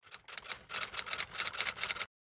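Typewriter sound effect: a quick, irregular run of key clicks as a title is typed out letter by letter.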